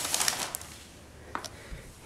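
Cardboard box being handled: a short scraping rustle at the start, then quiet with two faint clicks.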